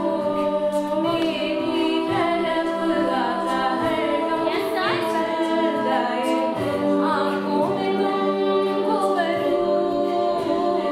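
All-female a cappella group singing an arrangement of a Bollywood song: backing voices hold steady chords while a lead voice sings over them with sliding, ornamented notes.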